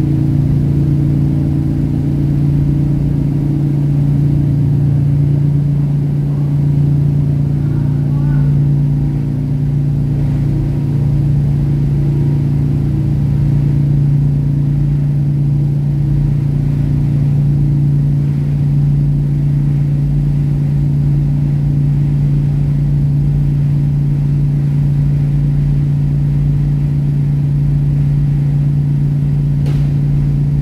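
A ferry's engines running with a steady low drone, heard from inside the passenger cabin as the vessel pulls away from the pier.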